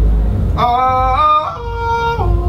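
Music: a melody of long held notes that jump up and down in pitch in steps, over a heavy deep bass.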